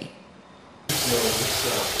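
A steady, loud hiss that starts abruptly about a second in, with faint voices beneath it.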